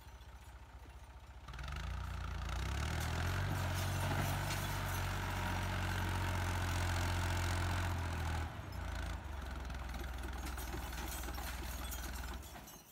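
Farm tractor's diesel engine, quiet at first, then revving up about a second and a half in and running hard as the tractor crawls over a rocky mountain track. The engine note dips briefly about two-thirds of the way through, then holds steady again.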